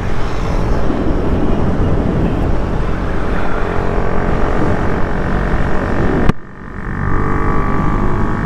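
Motorcycle running along the road, its engine note mixed with heavy wind noise on the camera microphone. About six seconds in there is a sharp click and the wind noise drops, leaving the steady engine note clearer.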